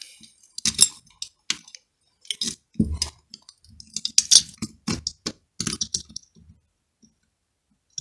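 Irregular small clicks and clinks of a thin drilled aluminium strip being handled and fitted over screws on top of a small lead-acid battery, to bridge a dead cell.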